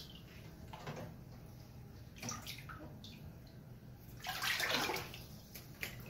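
Bathwater splashing and sloshing as a child moves about in a bathtub: a few short splashes, then a bigger, longer splash about four seconds in.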